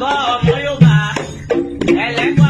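Batá drums playing a rhythm of repeated deep strokes, with a voice singing over them near the start: a Lucumí call to Elegguá.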